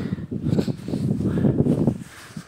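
Irregular rustling and crackling noise, loud and low-pitched, with no clear rhythm or tone, dropping away suddenly at the end.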